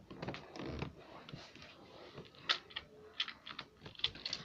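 Faint, scattered small clicks and soft rustles, a few of them slightly louder, with no steady motor sound.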